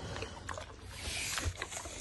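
A pig nosing and rooting in straw bedding: a dry rustling with a few small clicks and a soft knock about one and a half seconds in.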